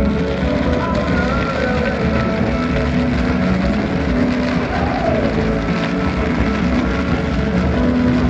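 Background music with held notes over a dense, steady crackling and low rumble from a daytime fireworks display of white crackling trails.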